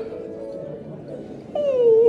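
A man's tearful whimper: a quieter trailing-off sound, then one short whine falling in pitch about one and a half seconds in, over soft background music.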